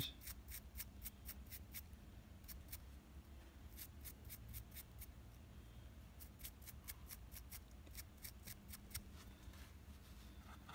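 Faint, quick scratchy strokes of a small dry brush flicking across the raised details of a plastic miniature, several a second with a couple of short pauses: dry brushing white highlights.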